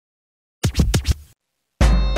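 A DJ record scratch: a quick run of sharp back-and-forth strokes lasting under a second. After a brief silence, the soca track starts with a heavy bass just before the end.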